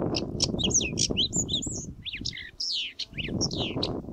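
A small songbird singing a quick, varied run of high chirps and short whistled notes, several sliding down in pitch in the second half, over a steady low background rumble.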